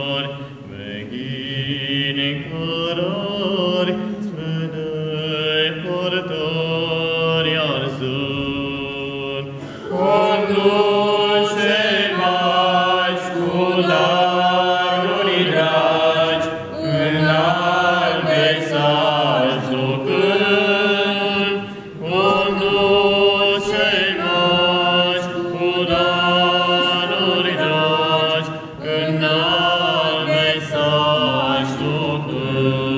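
A small group of men singing a Romanian Christmas carol (colindă) unaccompanied, in several voices, phrase by phrase with brief pauses between lines. The singing grows fuller and louder about ten seconds in.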